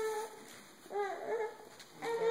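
High-pitched whining vocal sounds: a held whine ends just after the start, then a couple of short rising-and-falling whimpers come about a second in.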